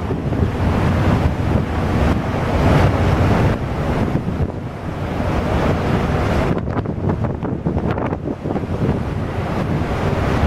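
Wind buffeting the microphone over a steady low rumble from the icebreaker Frej moving through broken sea ice close alongside.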